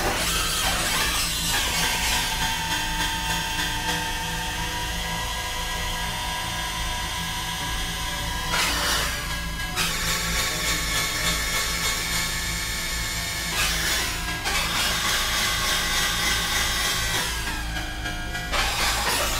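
Experimental electronic drone music: layered, steady synthesizer tones over a constant low hum. The drone is broken four times, at roughly four- to five-second intervals, by a short burst of grinding, drill-like noise.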